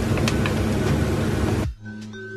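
Grated carrot sizzling as it drops into onion and garlic frying in oil, with a few light ticks from a wooden spoon scraping the bowl. The sizzle cuts off abruptly near the end, leaving quiet background music.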